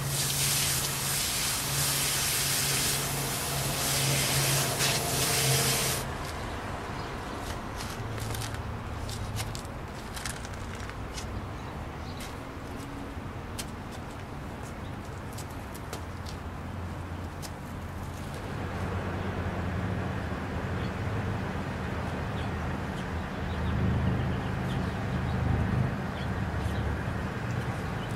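Water spraying from a garden hose onto hard-packed dirt to soften it: a loud hiss that cuts off about six seconds in. Quieter scattered clicks and scrapes follow as the wet soil is worked with a tool.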